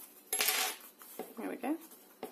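A brief clatter about half a second in as a small craft tool and card are handled on a cutting mat, followed by a woman saying "okay".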